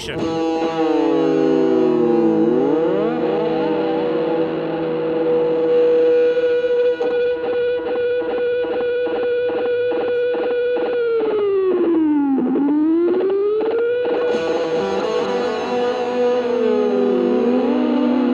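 DOD Rubberneck analog delay self-oscillating: its repeats feed back into a sustained, ringing tone that sweeps in pitch as the controls are worked. About twelve seconds in the pitch dives down and climbs back up, the rubbernecking pitch bend of the held footswitch.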